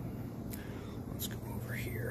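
Steady low hum in the room, with a few faint clicks and a short breathy sound near the end.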